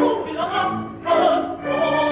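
Operatic singing with orchestral accompaniment: sustained sung phrases over the orchestra, easing briefly about halfway through before the voices come back in.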